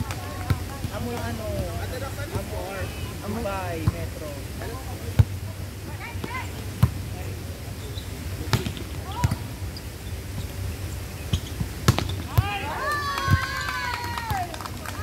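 Volleyball being hit back and forth by players' forearms and hands: several sharp thumps, a second or two apart, with people's voices calling out at the start and again near the end.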